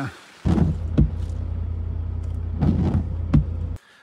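A vehicle's engine running, heard from inside the cabin as a steady low hum, with a few short knocks over it. The hum stops abruptly just before the end.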